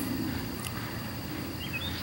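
Outdoor woodland ambience: a steady low background rumble with a thin, steady high tone. A few short bird chirps come near the end.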